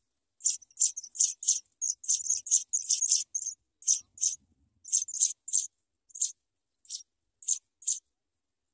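African pipit nestlings begging: a fast run of short, high, thin calls for the first few seconds, thinning out to single calls about every half second near the end.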